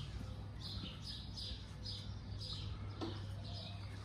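Small birds chirping over and over, short high chirps roughly every half second, over a faint steady low hum.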